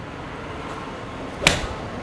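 A Ping G15 seven-iron striking a golf ball off an artificial-turf hitting mat: one sharp crack about one and a half seconds in.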